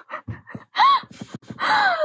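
A young woman laughing breathlessly into her hands: gasping breaths, a short high squeal about a second in, and a breathy laugh falling in pitch near the end.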